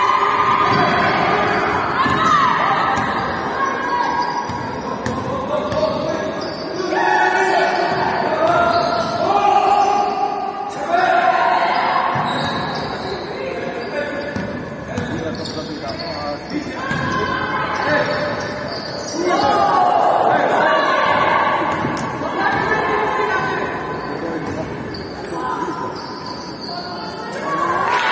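A basketball being dribbled and bounced on a wooden court in a large, echoing sports hall, with players' voices calling out through the play.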